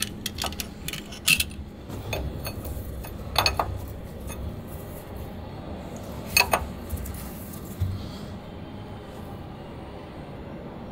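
Scattered metallic clinks and knocks of the oil filler cap being refitted on a bus engine, with a pair of sharper clinks about six and a half seconds in, over a low steady hum.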